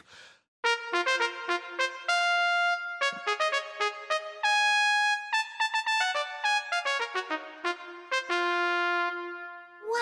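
Trumpet playing a fanfare: a string of quick repeated notes and short held tones, starting about half a second in and closing on a long low held note.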